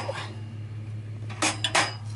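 Metal clicks and clatter from the folding legs of a BioLite FirePit being swung shut, a quick cluster of knocks about one and a half seconds in, over a steady low hum.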